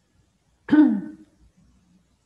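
A person clears their throat once, a short voiced sound falling in pitch, lasting about half a second, heard over the video-call microphone.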